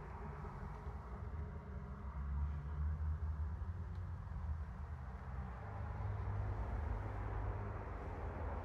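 Steady low rumble of road traffic from the nearby road, swelling a little about two seconds in and again later.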